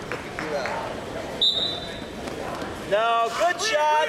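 Men's voices calling out in a gym, ending with a loud shouted "clear" near the end. A brief high squeak sounds about a second and a half in.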